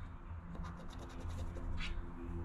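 A coin-like token scraping the coating off a paper lottery scratch-off ticket. It makes a quick run of short scrapes about halfway through, then one more near the end, uncovering a number spot.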